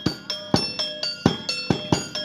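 Topeng monyet street music: a small hand-held metal gong struck in a steady repeating beat, about three strikes a second, ringing in two alternating pitches, with drum beats mixed in.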